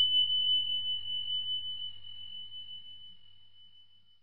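A single high-pitched chime sound effect marking the end of the answer time. It is one pure ringing tone, struck just before and fading slowly away over about four seconds.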